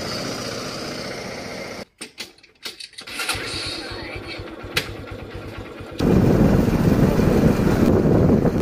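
Honda Shine motorcycle's single-cylinder engine running at idle with an even pulsing beat, starting about three seconds in. For the last two seconds, loud rushing wind on the microphone while the bike is ridden.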